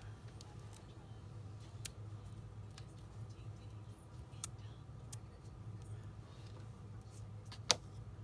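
Fingers handling paper card pieces while peeling the backing off foam adhesive dimensionals: a few small ticks and one sharper click near the end, over a low steady hum.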